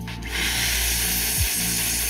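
Handheld electric air duster blowing a strong, steady hiss of air onto a wet circuit board to drive out the water. It starts shortly in, over background music.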